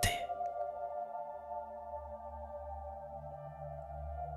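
Soft ambient background music: steady, held drone tones over a low bass that swells and fades in slow pulses.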